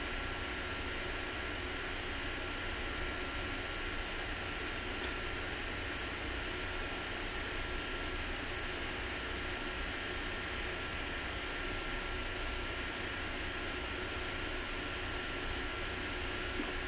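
Steady background hiss with a low rumble beneath it and a faint steady tone, unchanging throughout, with no distinct knocks or calls.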